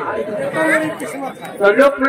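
Speech: an actor's spoken stage dialogue, picked up by the stage microphones.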